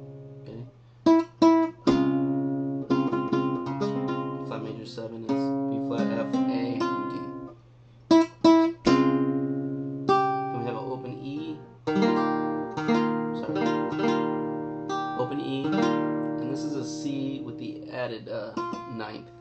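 Nylon-string flamenco guitar playing a bulería falseta: plucked melody notes and chords ringing out. Short groups of sharp, loud accented chord strikes come about a second in and again just past the middle.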